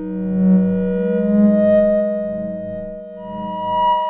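DinisNoise microtonal software synthesizer played from a keyboard: sustained, overlapping pure tones that swell and fade. New, higher notes enter about a second in and again near the end.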